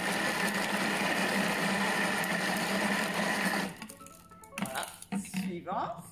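Thermomix food processor's motor and blades running steadily at speed 5, mixing peppers and aubergine, with a steady hum and a high whine. It cuts off suddenly a little over halfway through as the timed mix ends.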